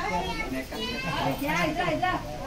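Several people talking at once, with high-pitched children's voices among the adult chatter.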